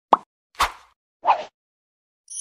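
Three short cartoon pop sound effects, a little over half a second apart, each dying away quickly.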